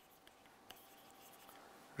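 Near silence, with a few faint taps and scratches of a stylus writing on a tablet.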